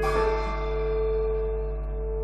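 A cymbal struck once, its shimmer fading away over the two seconds, over a held piano chord ringing on underneath.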